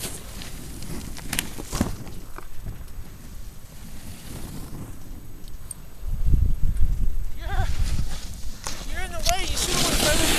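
Snowboard sliding and scraping over snow with wind on the microphone, the rumble getting clearly louder about six seconds in. From about seven and a half seconds a person's voice calls out in short rising-and-falling shouts without words.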